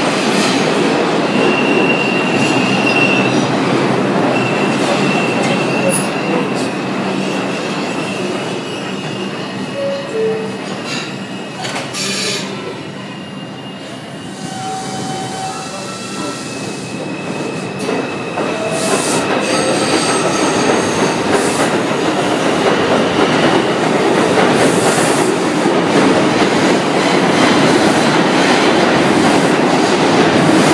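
R142 subway train moving through an underground station, with steady running noise and wheel clatter, and a thin high wheel squeal that holds for most of the first twenty seconds. The noise eases in the middle, then builds again as a train speeds past near the end.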